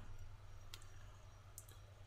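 Two faint, sharp computer mouse clicks, a little under a second apart, over quiet room tone.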